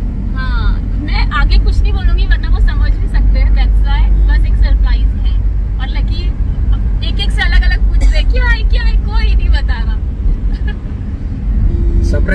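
Steady low rumble of a car driving, heard from inside the cabin, with people talking over it.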